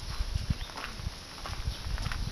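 Footsteps walking on a dirt path at an ordinary pace: a run of soft thumps, a few a second, some with a light crunch of grit underfoot.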